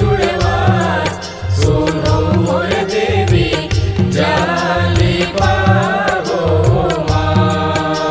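Chhattisgarhi devotional jas geet music: tabla and drum-pad beats under a wavering melody line that is held on steady organ notes near the end.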